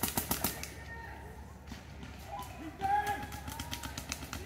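A rapid burst of paintball marker shots, about ten a second, ending about half a second in. From about two seconds in, players shout across the field.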